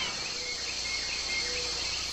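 Steady night-time chorus of crickets, an even high-pitched trilling, with two faint short tones about half a second and a second and a half in.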